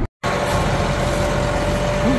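Tractor running steadily while pulling a planter through wheat stubble, with a steady whine over the engine noise. The sound drops out for a split second just after the start.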